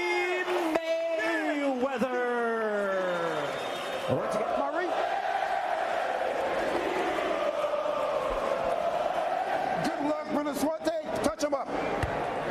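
A ring announcer's amplified voice stretching out a boxer's name in one long held call that slides down in pitch and ends about three seconds in, followed by an arena crowd cheering.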